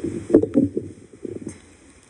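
Microphone handling noise as the mic is adjusted: muffled thumps and rubbing, with a couple of sharp knocks about half a second in and a few weaker bumps later, then quiet.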